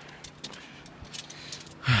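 Zipline harness carabiners and metal gear clinking lightly a few times. A voice with a sigh comes in near the end.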